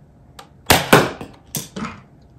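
Nerf Rival spring-plunger blaster fired: a faint click, then two loud sharp cracks in quick succession, followed by two softer knocks later on.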